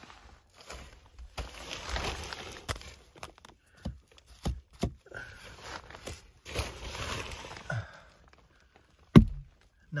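Rustling and scraping of a person crawling through a crawl space, in two long stretches, with scattered knocks; a sharp knock just after nine seconds in is the loudest.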